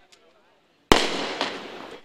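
A single sharp bang about a second in, followed by a fading, echo-like tail.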